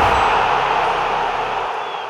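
Logo intro sound effect: a loud rushing, static-like noise that slowly fades away as the logo settles.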